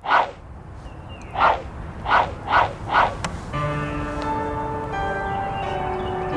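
Five quick whoosh sound effects, each sweeping downward in pitch, in the first three seconds, fitting a phone app's swipes. About three and a half seconds in, gentle music with held notes comes in.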